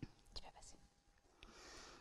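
Near silence: a few faint clicks, then a soft intake of breath near the end.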